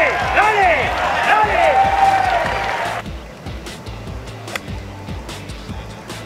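A golf gallery cheering and whistling as a shot finishes at the hole. The cheering cuts off abruptly about halfway through, leaving quieter background music with a few faint sharp clicks.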